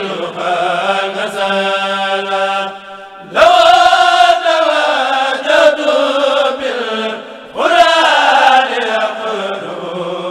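A Mouride kurel, a group of men's voices, chanting a khassida a cappella in long melodic phrases. A fresh, louder phrase starts about three and a half seconds in and again past seven and a half seconds.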